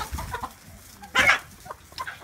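Chickens clucking softly, with one short, loud squawk a little past a second in.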